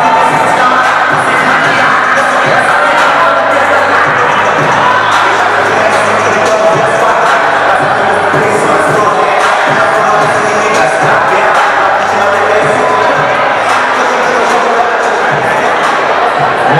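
Loud music with a crowd cheering and shouting over it, steady throughout.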